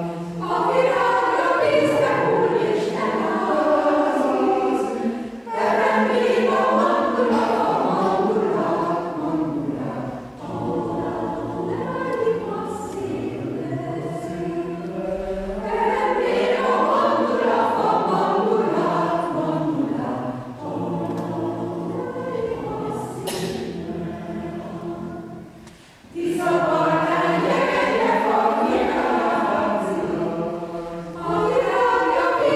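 Mixed choir of men's and women's voices singing a cappella in several phrases, with short breaks between them, a softer passage a little before the end, then full voice again.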